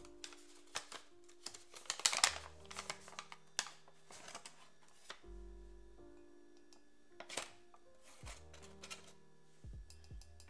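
Background music with slow held low notes, over the crinkling of a paper flour bag being opened and a measuring spoon scooping flour and clicking against a mug. The loudest crinkling comes about two seconds in, with more handling clicks later.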